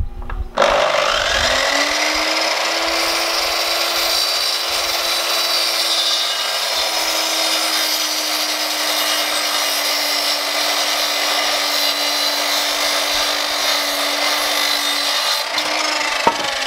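Parkside mitre saw starting up about half a second in, its motor whining up to speed, then running steadily as the blade is brought down through a pine sawhorse leg for an angled parallel cut. The pitch sags slightly as the blade works through the wood.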